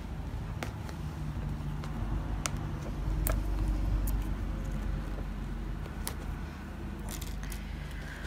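Hands handling a crocheted cord bag and its fabric lining: a low rubbing rumble that swells in the middle, with about four single light clicks spread through it and a quick cluster of clicks near the end.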